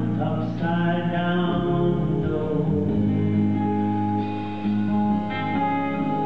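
A live band playing an instrumental passage of a slow ballad, with acoustic guitar in the mix and long held notes over a steady bed of chords.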